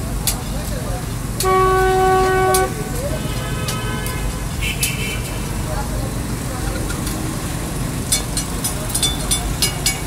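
Street traffic running steadily, with a vehicle horn sounding one long honk about a second and a half in, the loudest sound, then a fainter second horn just after. Scattered sharp clicks and knocks near the end.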